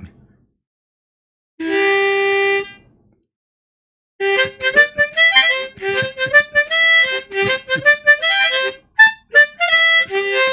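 Harmonica played by mouth: one held note for about a second, a pause, then from about four seconds in a quick run of short notes in a made-up melody.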